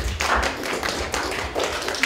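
An audience applauding: many dense, irregular hand claps.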